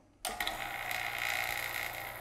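Oil-sealed vacuum pump switching on: a sudden start a fraction of a second in, then running steadily. Its inlet valve to the tube is still closed, so it is not yet drawing air from the tube.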